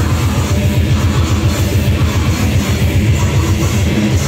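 Grindcore band playing live at full volume: distorted electric guitars and bass over fast, dense drumming, with a vocalist screaming into the microphone.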